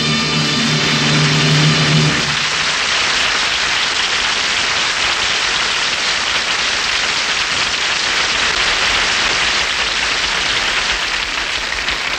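Orchestra music ends about two seconds in, followed by steady studio-audience applause.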